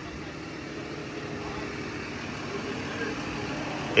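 Large 36,000-pound forklift's diesel engine idling steadily, a low even hum.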